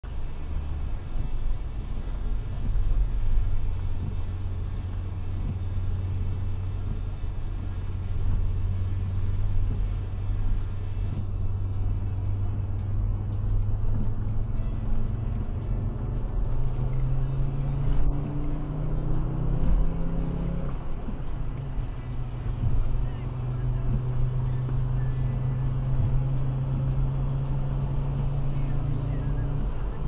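Car engine and tyre noise on a wet road, heard from inside the cabin: a steady low drone that rises in pitch as the car speeds up from about 38 to 70 mph in the second half, then holds steady at the higher speed.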